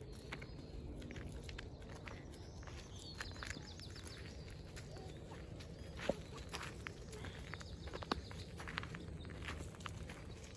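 Footsteps on a dirt path through brush, with scattered crunches and snaps of twigs and dry leaves over a steady low rumble. A bird trills briefly about three seconds in.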